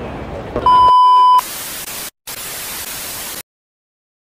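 Edited-in transition sound: a loud, steady bleep tone just under a second long, then static hiss with a brief break, which cuts off suddenly into silence. Mall background chatter is heard at the start, before the bleep.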